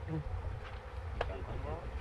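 Fishing reel being cranked as a hooked fish is wound up to the boat, a faint buzzing whirr over a steady low rumble, with one short click about a second in.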